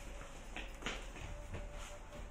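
Faint soft footsteps on carpet, a few light irregular taps over a low steady hum.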